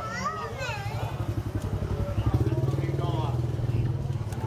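Small motor scooter engine running steadily close by, getting louder about two seconds in, with people's voices, some of them children's, over it.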